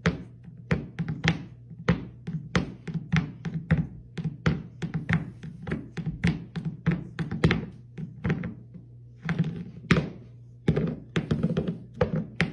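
A small round-bottomed bowl rocking and knocking against a hardwood floor as a cat paws at it: an irregular run of sharp clacks, several a second, with a brief lull a little after the middle.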